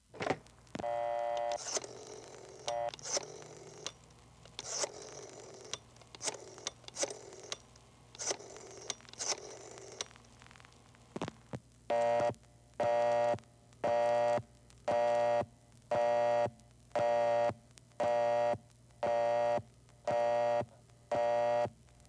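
Telephone sound effect: a click as the receiver is lifted, a brief dial tone, then a rotary dial wound and let run back several times. About halfway through, a busy signal starts pulsing on and off about once a second, ten times.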